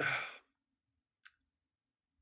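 A man's short breathy sigh, fading out within half a second, followed by quiet with one faint click about a second later.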